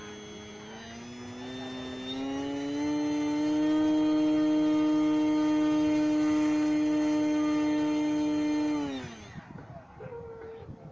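Model airplane's motor and propeller running up while the plane is held by hand: the whine climbs in pitch over a couple of seconds, holds steady and loud for about six seconds, then drops away and stops about nine seconds in.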